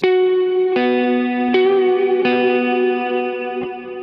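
Electric guitar playing a short single-note riff of five picked notes, each ringing into the next. One note is bent slightly and released.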